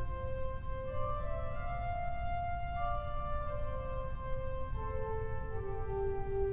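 Pipe organ (W. W. Kimball, 1897, rebuilt by Buzard) playing soft held chords on the Unda Maris drawn with the Dulciana, the notes moving slowly from chord to chord. The Unda Maris is a rank tuned slightly off pitch, so together with the Dulciana it gives a gentle wavering tone.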